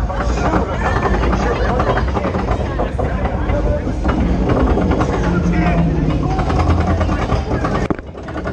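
Roller coaster train running along its track: a steady low rumble with wind on the microphone, mixed with riders' indistinct voices.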